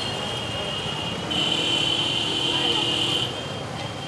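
Busy market ambience of background chatter and general crowd noise, with a steady high-pitched tone that grows louder for about two seconds in the middle.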